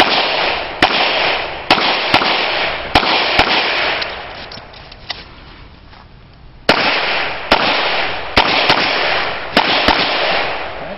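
Handgun shots fired in two strings of six, roughly one shot every half to one second. The strings are separated by a pause of about three seconds. Each report is followed by a long ringing tail.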